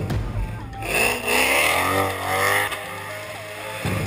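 Supercharged 4.6-litre V8 of a 2005 Roush Mustang revving hard, its pitch rising and falling as the rear tyres spin and squeal in a burnout, loudest from about a second in to near three seconds. Background music plays underneath.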